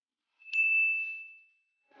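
A single high, bell-like ding: one clear tone that starts sharply about half a second in and fades away over about a second.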